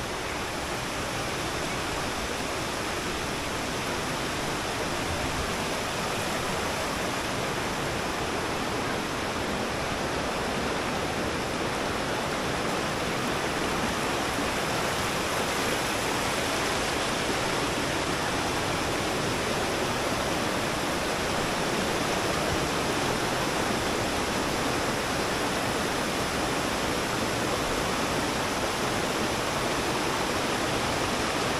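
Shallow rocky river rushing over and between boulders in small rapids, a steady even rush that grows slightly louder over the first half.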